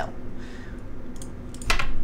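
Computer keyboard and mouse clicks as tiles are selected and the F4 key is pressed: a few light clicks, then a louder key press near the end.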